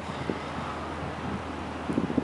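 Steady outdoor background noise: wind on the microphone over a low, constant hum of distant traffic.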